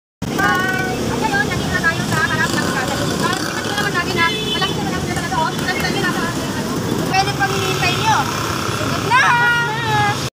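Busy street noise: motorcycles and motorcycle tricycles running in traffic, mixed with a jumble of indistinct voices.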